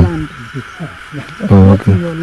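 Men's voices talking in the field, one voice loud and drawn out near the end, over a steady high drone of insects.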